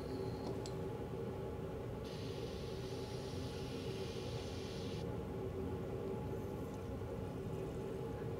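Blichmann BeerGun bottle filler hissing steadily for about three seconds as it is worked in the bottle, a few seconds in, over a steady low hum.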